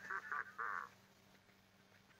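A faint, short vocal sound in the first second, a soft wavering voice, then near silence.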